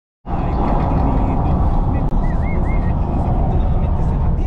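Steady road and wind noise inside a car moving at highway speed, a loud low rumble that cuts in just after the start. A brief wavy high-pitched tone comes through about halfway.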